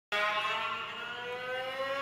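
Free improvisation by flute and two violas: several sustained, overlapping tones, one sliding slowly upward in pitch, coming in suddenly at the very start.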